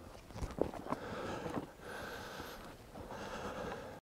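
A few sharp knocks and clicks, then two stretches of breathy rustling noise close to the microphone.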